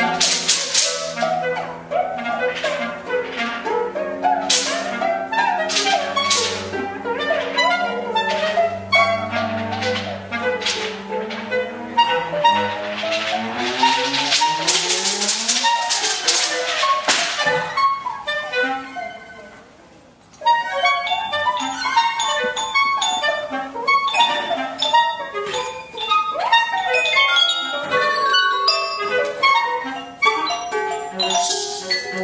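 Contemporary chamber music played live by clarinet, cello, harp and percussion: held notes with struck and plucked accents build to a dense climax, drop away briefly about twenty seconds in, then give way to quick scattered short notes.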